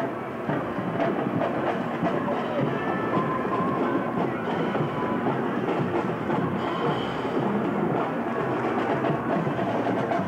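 Marching band music from a passing parade, mostly drums, heard as a steady, dense din.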